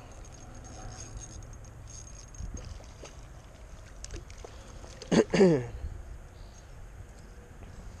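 A hooked white bass fought to the bank on a light spinning rod, splashing at the surface, with a few small splashes and clicks about four seconds in over a steady low rumble. Just after five seconds a man gives a short wordless exclamation, the loudest sound.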